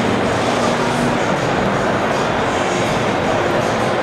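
Steady, even rumbling noise of a large indoor exhibition hall, with no distinct events standing out.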